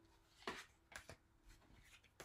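Faint handling of tarot cards: a few soft slides and taps as cards are drawn from the deck and laid on a cloth-covered table, the clearest about half a second in.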